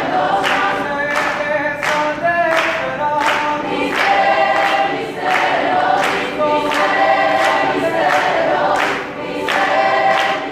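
High school chorus of mixed voices singing, set to a steady beat of sharp hits about twice a second.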